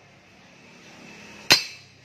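A single sharp metallic clank about one and a half seconds in, with a brief ring after it, as a scooter's steel clutch bell (clutch drum) is set down against metal parts.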